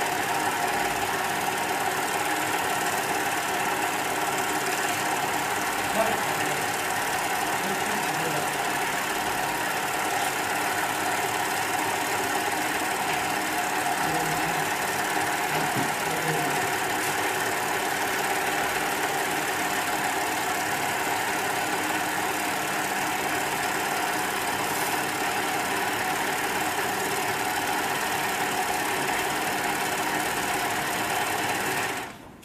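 Hightex flatbed single-needle lockstitch sewing machine, with wheel and needle feed and a driven roller presser foot, stitching through leather at a steady run.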